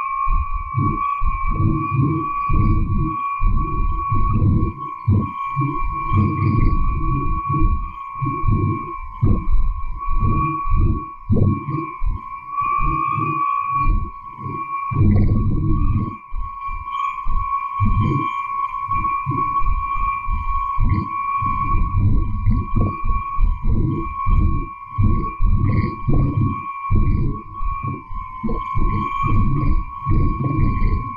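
Shortwave radio interference from a household appliance's DC motor, played back after noise filtering and frequency shifting: choppy, garbled low bursts that start and stop irregularly, over two steady high tones. The uploader interprets the processed noise as audible voice.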